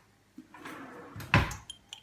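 A kitchen drawer being handled: a light click, some shuffling, then the drawer pushed shut with one sharp thud about a second and a half in, followed by a couple of faint clicks.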